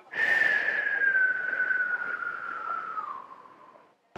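A long, breathy whistle: one note that starts suddenly and glides slowly down in pitch for about three and a half seconds before fading out.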